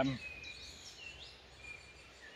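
Faint birdsong: thin whistled notes and short gliding phrases, heard after a man's drawn-out 'um' trails off near the start.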